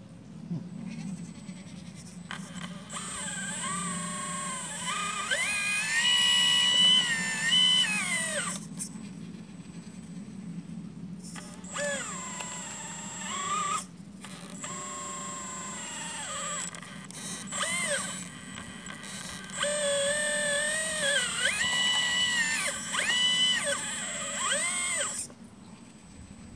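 Hydraulic pump of a 1/12-scale RC Liebherr 954 excavator whining in runs of several seconds, its pitch rising and falling as the boom and arm are worked under load, over a steady low hum. The whine breaks off briefly twice and stops shortly before the end.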